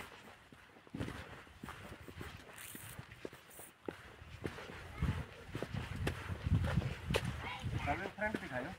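Footsteps on a dry dirt path, about two steps a second, with a low rumbling on the microphone in the second half.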